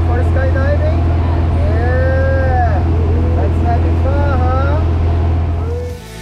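Single-engine light aircraft's piston engine droning steadily, heard from inside the cabin, with voices talking over it. The drone drops away near the end.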